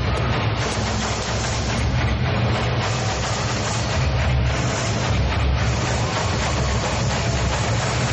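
Loud Indian-style dance music with a heavy bass, accompanying a rhythmic gymnastics ribbon routine.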